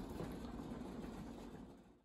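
Faint, steady background hiss with no distinct sounds, fading away near the end.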